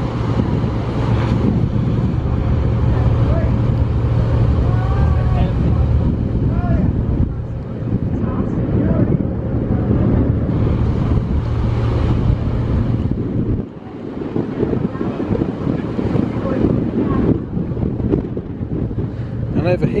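Steady low engine drone aboard a passenger-and-car ferry, with wind buffeting the microphone. The drone stops abruptly about two-thirds of the way through, leaving the wind.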